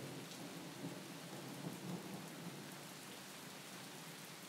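Faint steady rain ambience, with a low rumble underneath that comes and goes.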